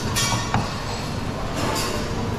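Buffet-kitchen background noise: a steady low hum, with short hissing, clattering bursts near the start and again near the end, and a single sharp clink about half a second in.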